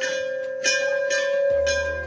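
A hanging temple bell rung by hand, struck four times about every half second. Each strike rings on into the next over a steady hum.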